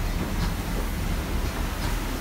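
Paddle steamer Alexander Arbuthnot underway: its paddle wheel turning and churning water in the paddle box, heard on deck as a steady low rumble with a wash of splashing.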